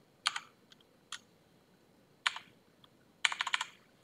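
Computer keyboard keys being typed in short bursts: a quick run of keystrokes about a quarter second in, a single key about a second in, another short run just past two seconds, and a fast run of several keys near the end.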